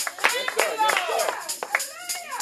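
Congregation clapping in a steady rhythm, mixed with excited shouting voices and music.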